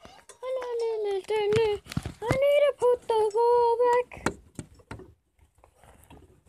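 A child's high voice singing held, wordless notes, then a few sharp clicks near the end as the phone is handled.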